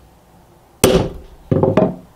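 A hammer strikes a steel punch set against a hardened knife blade, giving a sharp ringing clang a little under a second in and a second ringing hit about half a second later. This is a punch hardness test, and the blade is hard enough that the punch barely marks it.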